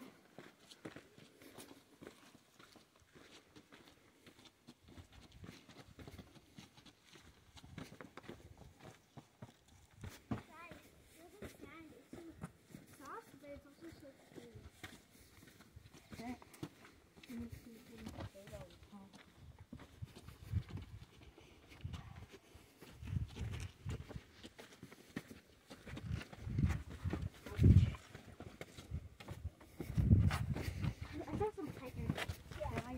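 Faint, indistinct voices, with a run of low thumps in the last third that grow louder, the loudest just before the end.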